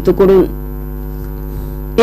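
Steady electrical mains hum, a drone with a stack of evenly spaced overtones, underlying a radio news recording. A newsreader's word ends about half a second in.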